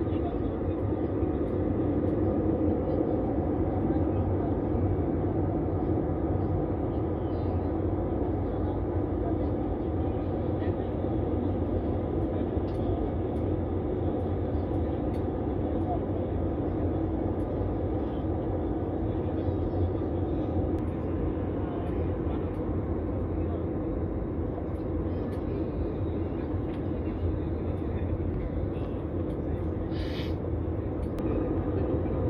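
Steady cabin noise inside a twin-engine jet airliner in flight: a constant low drone from the turbofan engines and the rush of air past the fuselage, heard from a window seat.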